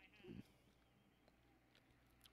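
Near silence, broken by one short, faint voice-like sound less than half a second in.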